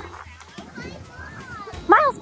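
Children playing and chattering in the background, with faint voices over a low hum. Just before the end, a loud rising tone cuts in.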